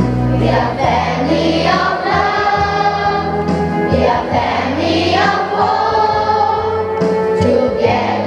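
A children's church choir singing a gospel song together in phrases, over a steady instrumental accompaniment with sustained low notes.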